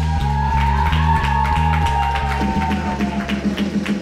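Live band music near the end of a song: a pulsing, repeating bass line under a long held electric guitar note that sags slightly in pitch, with steady ticking percussion. It grows quieter near the end.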